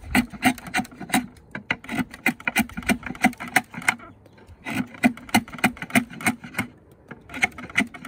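Draw knife shaving a black locust peg blank clamped in a shave horse: quick, light scraping strokes, several a second, in two runs with a short pause about halfway.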